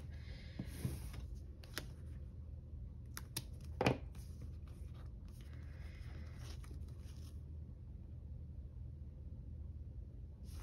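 Washi tape and paper being handled on a planner page: soft rustling and scraping as the tape is pulled, pressed down and torn, with a few light clicks and one sharp knock about four seconds in.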